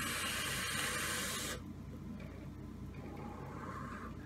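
Wotofo Lush RDA drawn on while the coil fires: a steady hiss of sizzling coil and air rushing through the dripper's airflow, which stops about one and a half seconds in.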